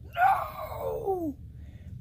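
A cartoon character's voice letting out a wail that starts loud and falls in pitch over about a second.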